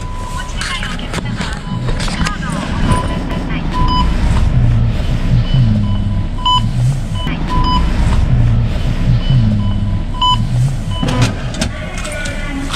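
Bank ATM beeping: short electronic beeps sound again and again as its touchscreen is pressed, over a voice and music underneath. Near the end comes a mechanical clatter as the coin tray opens for the deposit.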